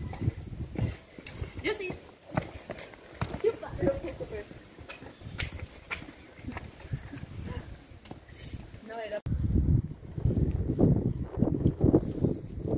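Irregular footsteps on a stone-paved path with brief snatches of voices. After a sudden cut near the end, low rumbling wind noise on the microphone.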